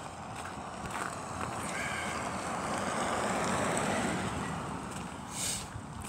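A vehicle driving past on the wet road: its tyre and engine noise swells over a few seconds and then fades.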